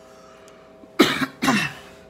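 A man coughs twice, two short coughs about half a second apart, starting about a second in.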